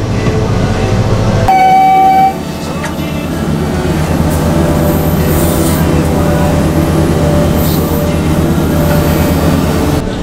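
Heavy site machinery running steadily with a low, even pulse, with a sudden change and a short high-pitched tone about a second and a half in.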